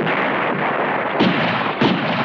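Battle sounds of gunfire and explosions: a continuous din with two sharp reports, one about a second in and one near the end.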